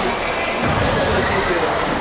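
Voices and chatter echoing through a large indoor sports hall, with no clear racket hit.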